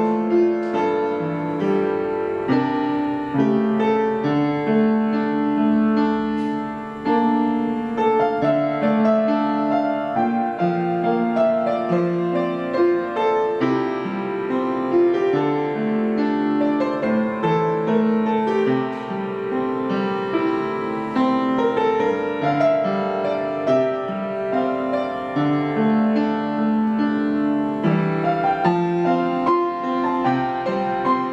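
Acoustic upright piano played solo, a pop song arranged for piano with both hands playing continuously at an even level.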